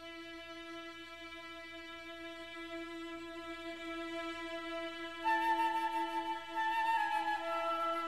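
Instrumental opening of a song: a single held note that slowly grows louder, joined about five seconds in by a higher melody line that steps downward.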